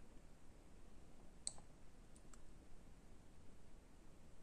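Near silence: room tone, with one faint, sharp click about one and a half seconds in and two fainter clicks shortly after.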